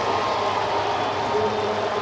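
Ballpark crowd cheering steadily as a home-team run scores.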